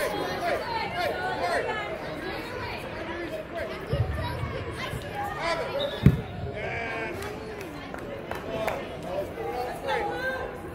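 A soccer ball kicked hard: a sharp thump about six seconds in, the loudest sound, with a duller thud about two seconds before it. Voices of players and spectators chatter throughout.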